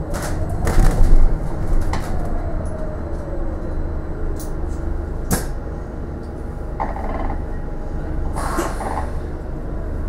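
Interior of a moving bus: a steady low engine and road rumble, with scattered knocks and rattles from the bodywork and fittings. A faint whine falls in pitch over the first few seconds.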